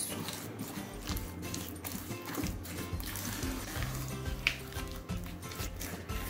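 Background music with low, steady notes, over a spatula stirring raw eggs into creamed butter and sugar in an enamel bowl: wet squishing with light clicks against the bowl.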